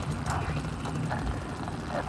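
Police helicopter's rotor and engine running steadily: a low drone.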